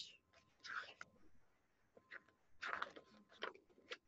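Near silence with a few faint, brief rustles as a page of a hardcover picture book is turned, and soft breathy sounds.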